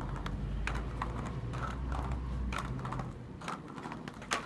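Children's plastic quad roller skates rolling over brick paving: a low rumble with irregular clicks and clacks, the rumble dropping away about two and a half seconds in.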